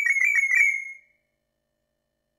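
Electronic beeping: a rapid run of high, even-pitched beeps, about six or seven a second, lasting about a second.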